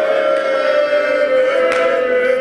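A man's voice holding one long, steady note of a chanted mourning lament through a microphone, sliding slightly down at the start and then held level.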